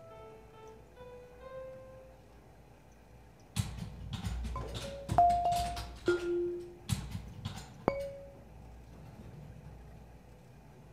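Robotic kinetic musical instrument playing: soft held notes for the first couple of seconds, then a handful of sharp struck notes between about three and a half and eight seconds in, each ringing briefly at its own pitch, then a quiet stretch.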